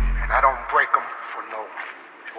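Indistinct talking from men standing close by, with no clear words. The bass of the hip-hop beat dies away within the first second.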